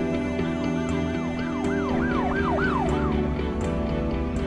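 Background music with a siren sound effect laid over it: a fast yelp that rises and falls three or four times a second and dies away about three seconds in.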